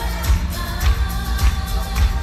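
Pop music with singing and a steady beat of about five beats every three seconds.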